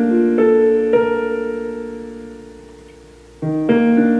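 Digital keyboard playing a piano part: notes struck one after another in the first second, then a chord left to ring and slowly fade, and a new chord struck near the end.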